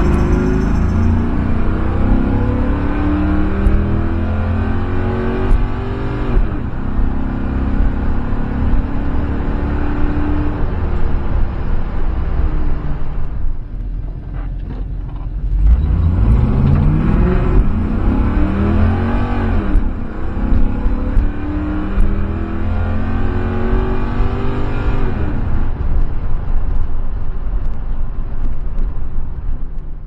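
A 1969 Camaro's LS3 V8, heard from inside the cabin, run hard through the gears on wide-open-throttle tuning pulls. Its pitch climbs and drops back at each upshift, and there are two such runs with a lull between them about halfway through.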